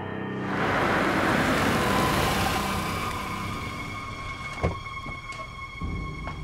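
Tense suspense score: a loud rush of noise swells in within the first second and fades over the next few seconds, leaving sustained high tones, with two sharp clicks near the end.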